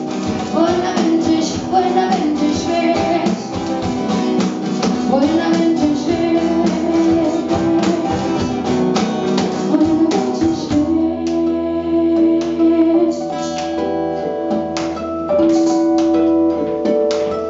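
Live acoustic band playing two acoustic guitars and a cajón, with a wavering melody line over them for the first ten seconds or so. After that the music settles into held, ringing chords with fewer beats.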